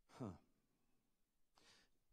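A man's short, breathy "huh" into a handheld microphone, falling in pitch, then near silence and an intake of breath near the end.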